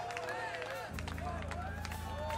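Festival crowd cheering, shouting and clapping over a band's sustained low held chord, which shifts to a new, fuller chord about a second in.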